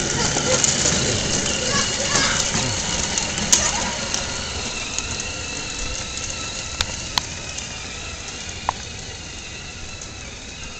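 Motor of a small child's quad ATV running steadily as it drives away, its sound slowly fading, with a few sharp clicks in the second half.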